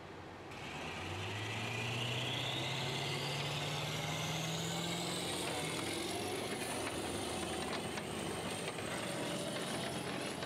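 Tracked armoured vehicle driving off, starting about half a second in: the engine note rises as it accelerates, and a high whine climbs steadily in pitch for several seconds, then holds.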